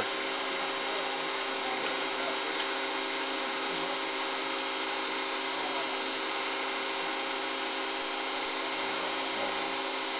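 Steady electric motor hum with several fixed tones over an even hiss, unchanging throughout.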